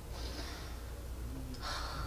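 Faint breaths drawn in during a pause in conversation: one near the start and another just before speech resumes, over a low steady hum.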